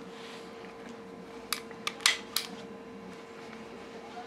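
Taurus PT-908 9 mm pistol's steel slide and action clicking as it is worked by hand during a chamber check: four sharp metallic clicks about a second and a half to two and a half seconds in, the third the loudest.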